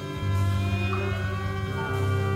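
Kitarasello, a bowed guitar-cello, playing one long low bowed note. A fresh bow stroke starts a moment in.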